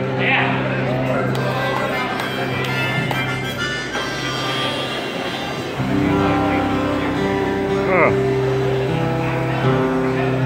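Live band playing the opening of a song on stage, with long held notes; about six seconds in the fuller band comes in and the sound gets louder and heavier in the low end.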